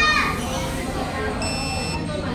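Café table pager beeping, a guest-paging device going off to signal that an order is ready: one steady, high-pitched beep starts about one and a half seconds in. Café chatter runs underneath.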